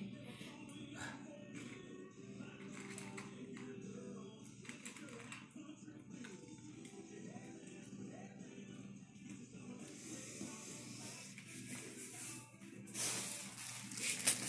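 Faint background music, with a miniature schnauzer eating bacon from a metal bowl: scattered light clicks and rattles against the bowl. A rush of noise comes in near the end.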